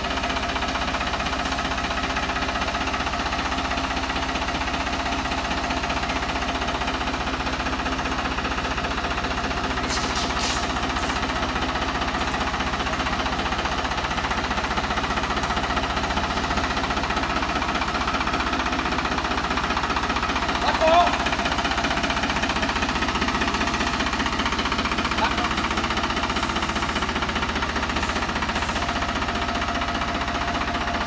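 Tractor diesel engine running steadily with a fast, even clatter. A short higher-pitched sound rises briefly above it about two-thirds of the way through.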